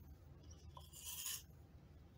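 Brief scraping rustle of paper cups being handled, about a second in, while hardener is poured into resin for mixing. A faint low hum runs underneath.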